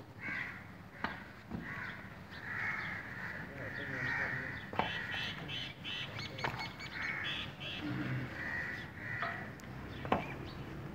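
Crows cawing repeatedly, a long string of harsh calls, with a few sharp knocks between them.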